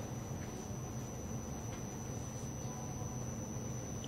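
A pause with only steady room tone: a low electrical hum and a thin, steady high-pitched whine, with no other sound.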